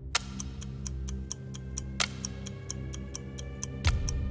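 Film-score ticking like a watch or clock, about four ticks a second, with a few louder ticks along the way. It runs over a low sustained drone and faint, slowly rising tones.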